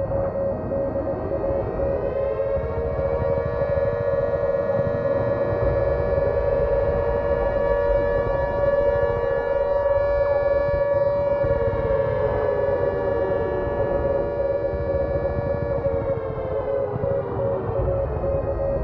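A siren-like wail that winds up over the first few seconds, holds steady, then slides back down over the last several seconds. Under it runs a steady pulsing tone and a low rumble, as in trailer sound design.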